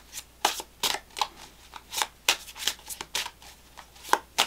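Deck of tarot cards being shuffled by hand: a quick, irregular run of short card slaps and flicks, about three a second.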